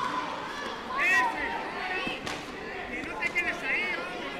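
Echoing sports hall during taekwondo sparring: overlapping voices and short high-pitched shouts, the loudest about a second in and a cluster near the end. A few sharp thuds of impacts cut through, the strongest a little past two seconds in.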